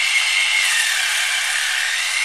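2NICE rechargeable portable water flosser running steadily, its pump giving a high whine over the hiss of the water jet spraying into a glass bowl.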